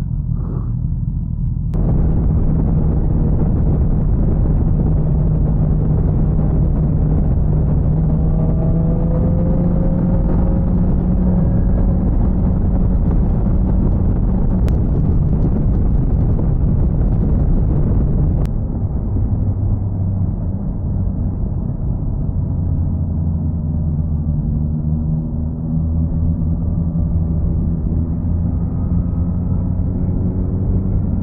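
BMW S1000XR motorcycle ridden at road speed: steady engine drone under heavy wind rumble on the mic. The sound switches abruptly about two seconds in, and again a little past halfway to a lower, deeper drone.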